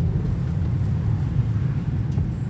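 Car driving slowly along a street, heard from inside the cabin: a steady low rumble of engine and tyre noise.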